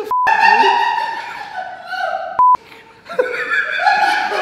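Two short, loud, single-pitch censor bleeps, one just after the start and one about two and a half seconds in, cut into men's laughing and talking.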